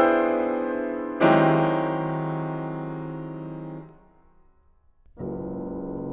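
Soundtrack music of slow, sparse piano chords, each struck and left to ring out. A new chord is struck about a second in and stops short just before four seconds. After a brief pause, a softer chord enters around five seconds.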